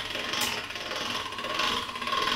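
Hand-cranked chrome pasta machine being turned, its gears and rollers running as a sheet of egg pasta dough is fed through on the widest setting, with a sharp click about half a second in.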